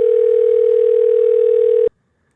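Telephone ringback tone on an outgoing call: one loud, steady ring tone with a slight waver, lasting nearly two seconds and cutting off abruptly.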